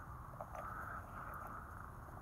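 Faint, steady background hiss with no distinct event: low outdoor ambience between remarks.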